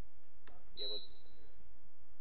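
A click, then a single short high-pitched electronic beep that starts sharply and fades out over under a second.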